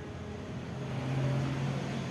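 A motor vehicle engine nearby: a steady low hum that grows louder about a second in, then eases a little.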